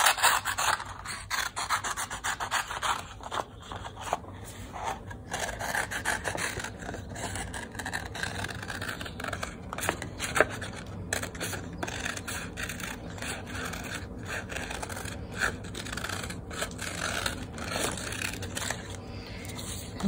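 Scissors cutting through a sheet of crayon-coloured paper: a steady run of irregular snips, with the paper rustling as it is handled.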